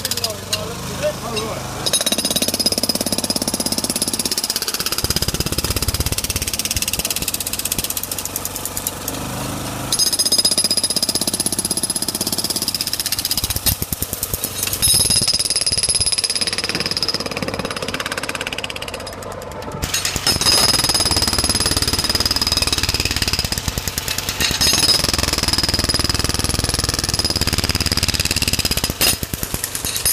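Jackhammer breaking up cracked asphalt: rapid hammering in long runs of about eight to ten seconds, with short pauses between runs.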